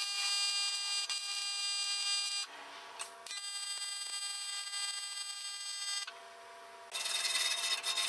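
AC TIG welding arc on aluminum, buzzing steadily in two runs of about two and a half seconds each as two short beads are laid, with a brief break between. Near the end, a wire brush scrubs the fresh weld.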